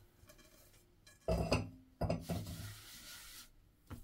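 Hands handling soft, sticky yeast dough over a flour-dusted countertop: a short thump about a second in, then a soft rubbing hiss for about a second and a half.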